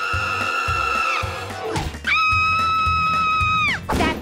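A cartoon man's high-pitched, girlish scream, held at one pitch twice: about a second at the start, then nearly two seconds from about two seconds in, each ending with a quick drop. Background music with a steady beat runs underneath.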